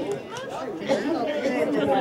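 Several people talking over one another near the microphone: spectator chatter at the touchline.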